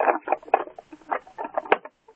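Small plastic Lego pieces clicking and rattling as they are handled and pushed back into place on a Lego model. The clicks come in a quick, irregular run, with one sharper click near the end.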